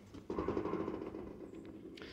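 Faint handling noise of small metal car parts and a paper gasket being touched and moved on a tabletop: a soft rustle and scrape with a few light clicks.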